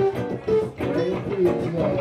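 Live band playing: acoustic and electric guitars and bass over drums.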